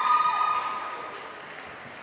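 A single high, held whoop from the audience rises and holds for a little over a second, over applause that dies away.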